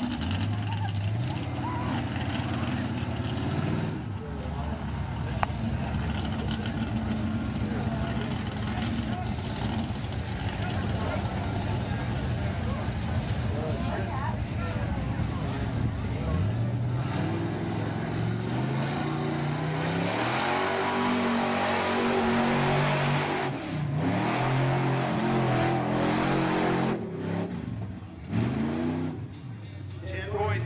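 A mud-bog pickup truck's engine running while the truck sits bogged down in the mud pit, then revved up and down again and again in the second half as it tries to get through.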